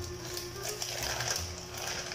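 A plastic courier pouch being torn open and crinkled by hand, in a quick series of short crackling rips.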